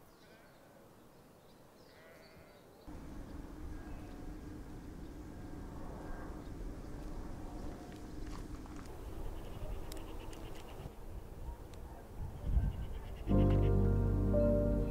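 Sheep bleating now and then in a field over a low, steady outdoor background. Music comes in loudly about a second before the end.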